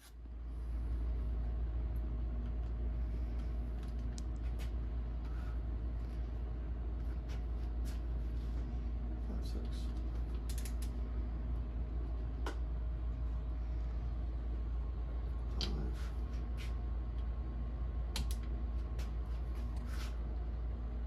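Hand ratchet snugging the cylinder fasteners on a Ski-Doo Rotax 800R two-stroke twin, creaking and clicking irregularly as the bolts are run down one after another in sequence, over a steady low hum.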